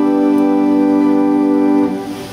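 A 1906 Peter Conacher two-manual pipe organ sounding one steady held note or chord on its lower manual, which cuts off near the end. The organ has gone untuned for years but is, in the player's words, "holding its own".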